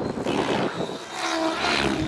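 Thunder Tiger Raptor G4 E720, an electric 700-size RC helicopter, flying freestyle 3D: steady rotor noise, with a brief pitched whine about two-thirds of the way in.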